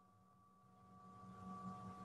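Near silence: a faint, steady electrical hum with a few thin tones comes up about a second in, the background of an open video-call microphone.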